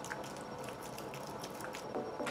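Faint wet squelching and small scattered clicks of a soft, moldable soap being squeezed and rubbed between wet hands over a bowl of water.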